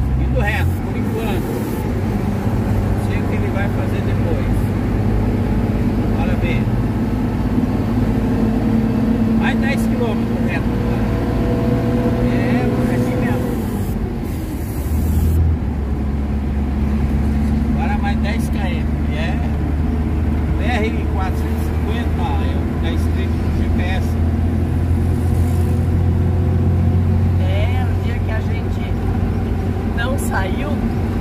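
Truck engine heard from inside the cab while driving. Its steady drone creeps up in pitch for about fourteen seconds, then dips briefly at about the halfway point, as in a gear change, and settles into a steady drone at a lower pitch.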